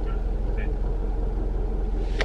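Steady low rumble of a car heard from inside the cabin, the engine idling.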